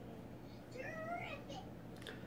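A faint, short call, rising then falling in pitch, heard a little under a second in over a low steady hum.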